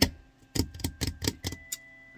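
A quick, irregular run of light clicks and taps, several a second, starting about half a second in and stopping about a second later.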